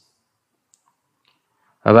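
Near silence with two faint clicks, then a man's speech starting near the end.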